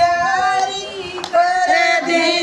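A woman singing a Haryanvi folk bhajan without words of talk, holding long notes, with a short break a little after a second in before the line resumes.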